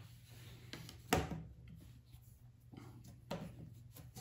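Light knocks and clicks of small plastic parts being handled: a yellow plastic gear motor and an acrylic chassis plate moved and set down on a cutting mat, the loudest knock about a second in.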